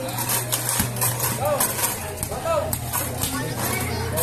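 Indistinct background voices of players and spectators around a basketball court, over a steady low hum.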